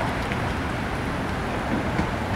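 Steady traffic noise of cars driving along a street.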